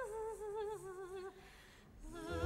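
A single operatic voice softly holding a wavering note that sinks a little and dies away a little over a second in.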